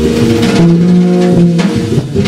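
Jazz trio of electric guitar, bass and drum kit playing a minor blues: held guitar notes over a walking low bass line, with a steady run of drum and cymbal strokes.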